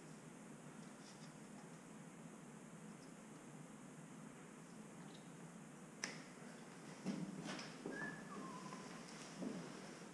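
Quiet room tone broken by a sharp click about six seconds in and a few rattles of hands working on the wiring, then two short electronic beeps, a higher one and then a lower one, a little after eight seconds.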